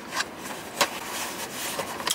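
Takeout food packaging being handled: quiet rustling with two short clicks, the sharper one just under a second in.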